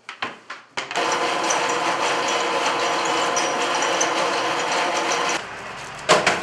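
A few light knocks, then an electric bakery machine's motor starts about a second in, runs steadily, and cuts off suddenly about a second before the end.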